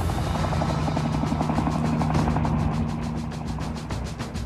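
Helicopter rotor chop with a steady low engine hum, a sound effect laid over music, fading slightly toward the end.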